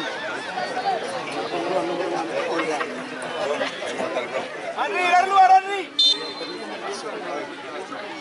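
Spectators at a football match chattering and calling out, many voices overlapping, with one loud shout about five seconds in.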